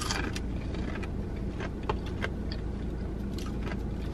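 Chewing with scattered soft crunches and mouth clicks, over the steady low hum of the car that the eater sits in.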